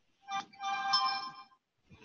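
A short electronic chime: a brief blip, then a steady held tone of about a second.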